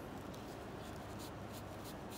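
A few faint, short scratching and rustling sounds from gloved hands and tissue handling a toe during toenail treatment, over a steady low background hum.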